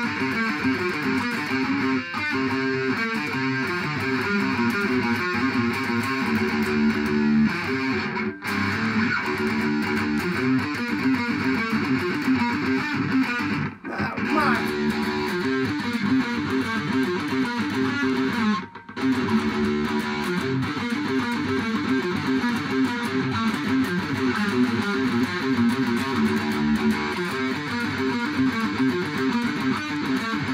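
Electric guitar played through a small Crate practice amp: continuous riffing, broken by three short stops about 8, 14 and 19 seconds in.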